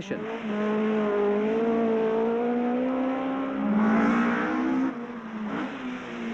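Rally car engine pulling hard, its note rising steadily through a gear, then a short rush of noise about four seconds in, after which it runs on at a lower note.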